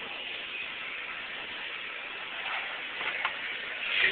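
Restaurant background noise: a steady hiss of room ambience, with a few faint brief sounds near the end.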